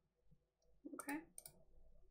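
A few sharp computer mouse clicks about a second in, from toggling a layer on and off, over near silence, with a short vocal sound alongside the first click.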